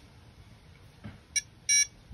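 Ziplevel digital altimeter level's measurement module: a light click of its ZERO button being pressed, then one short electronic beep near the end as the reading is set to zero at the datum point.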